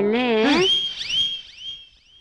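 A wavering tone with vibrato that ends about half a second in, then a high whistle-like tone that glides up and holds, repeated four or five times, each repeat fainter, like an echo dying away: a comic sound effect on the film soundtrack.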